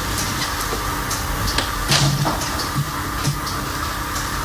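Steady background hum of a film soundtrack's room ambience, with scattered faint clicks and rustles and a brief low sound about two seconds in.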